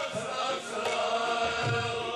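Sikh kirtan: men's voices chanting a hymn over sustained harmonium notes, with a low tabla stroke near the end.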